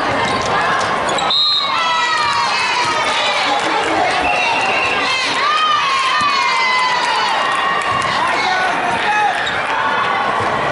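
Indoor volleyball game sounds: players' shoes squeaking on the court, ball hits and shouts over a background of crowd chatter. A short, steady high whistle sounds about one and a half seconds in.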